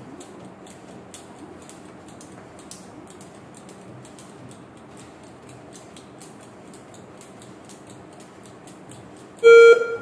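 Jump rope ticking against the floor in a steady rhythm, about three strikes a second, as a boy skips. Near the end a loud electronic timer beep sounds for about half a second, marking the end of the three-minute timed single-rope event.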